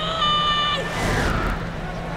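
Broadcast replay-transition sound effect: a chord of steady electronic tones for under a second, then a falling whoosh, over steady stadium crowd noise.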